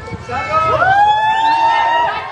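Crowd of fans shouting and cheering, several voices overlapping, with one long yell that rises in pitch and is held high for over a second.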